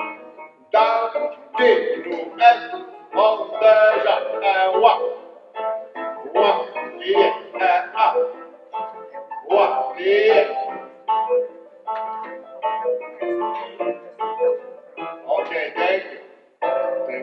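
A man's voice singing the melody in nonsense syllables, keeping time for the dancers, in a continuous run of short sung phrases.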